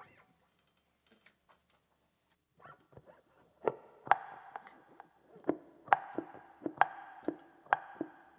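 Hollow-body archtop electric guitar played percussively. After a quiet start, sharp struck notes begin about three and a half seconds in and settle into a syncopated groove of about two hits a second, with the chord ringing between the hits.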